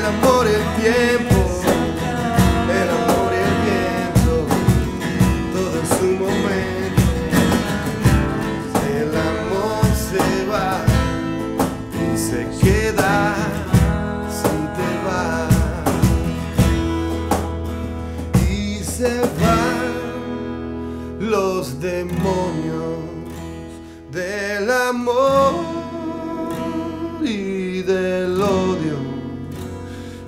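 A live acoustic band: steel-string acoustic guitars strummed over electric bass, with percussive hits and a male lead vocal. The playing thins out about twenty seconds in.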